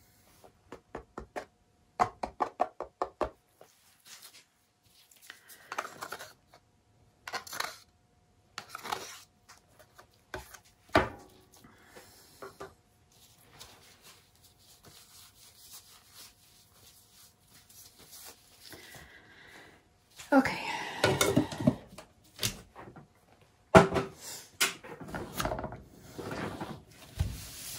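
Handling noises from acrylic paint pouring: a quick run of sharp clicks a couple of seconds in as a plastic pouring cup is tapped and shaken out over the canvas, then scattered knocks and, near the end, louder rubbing and scraping as the canvas and its turntable are handled.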